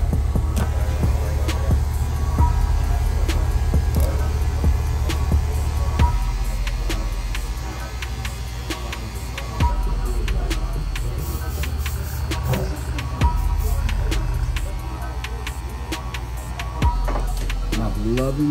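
Cordless hair clipper fitted with a guard, buzzing steadily as it is run up through short hair, under background music with a steady beat.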